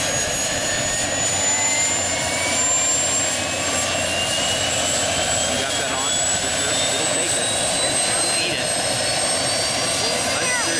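Turbine helicopter running up on the ground with its main rotor turning. Its high whine rises slowly and steadily in pitch over a steady roar as the turbine spools up before take-off.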